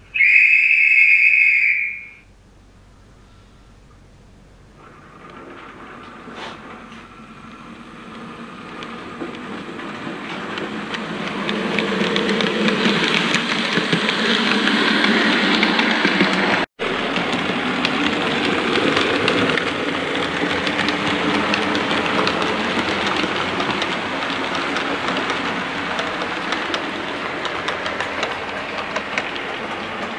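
A whistle blows one steady blast of about two seconds. Then a train's running noise builds up from about five seconds in and carries on steadily, broken by a brief cut-out just past halfway.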